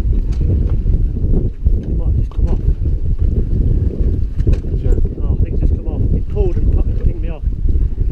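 Wind buffeting the microphone on an open boat at sea, a constant low rumble, with voices talking under it, mostly in the second half.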